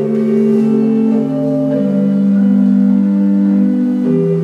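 Church music: slow, long-held chords moving from one to the next every second or so.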